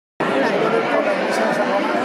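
Several people talking at once in overlapping, indistinct conversation, after a brief dropout of all sound at the very start.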